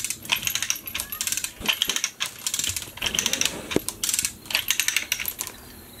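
Manual chain hoist clicking and rattling in quick bursts, one burst with each pull of its hand chain, as it lifts a heavy load.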